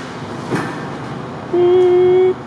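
A single steady tone of fixed pitch starts about one and a half seconds in and holds for under a second, over a constant background hum.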